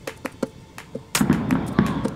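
Sharp knocks at uneven intervals, then about a second in a louder, denser stretch of thuds and low rumble.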